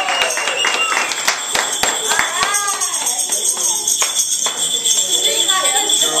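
A group clapping, cheering and singing along, over the steady jingling of a tambourine-like noisemaker.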